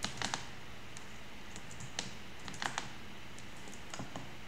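Computer keyboard keys clicking in a few short clusters: several quick keystrokes near the start, one around two seconds in and a short burst soon after, as lines of code are copied and pasted.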